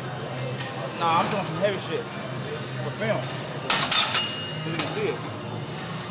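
Metal gym equipment clinking: a short cluster of sharp clinks about halfway through, the last leaving a brief ringing tone, over indistinct voices.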